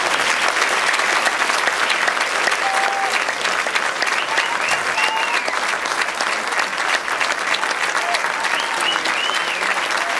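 Audience applauding steadily throughout, dense continuous clapping, with a few brief high cheers rising over it about halfway through and again near the end.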